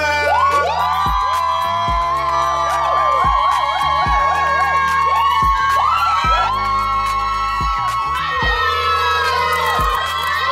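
Loud party music with long, high held notes that waver, over a steady deep bass, with a crowd cheering and whooping.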